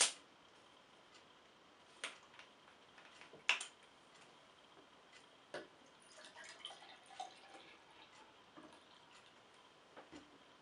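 Screw cap of a 2-litre plastic bottle of kvass twisted open with a sharp click, then a few light knocks of bottle and glass. Kvass is poured into a glass with faint splashing and gurgling; it is lightly carbonated and foams little.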